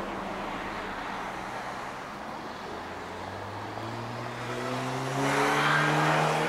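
A motor vehicle's engine over steady outdoor noise, growing louder and rising slightly in pitch as it accelerates nearby, loudest near the end.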